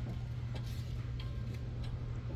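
A mechanical clock ticking steadily, faint against a steady low hum.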